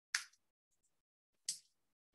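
Two single keystrokes on a computer keyboard, about a second and a half apart, the first a little louder.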